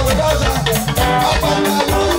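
Live band music at a stage show: electric guitar over a steady drum beat, with a man singing into a microphone.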